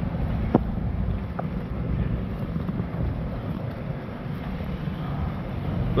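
A steady low engine hum and rumble, with wind noise on the microphone.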